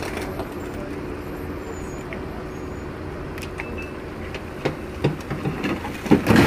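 Steady street noise of running vehicle engines and traffic on a wet road, with a few short knocks near the end.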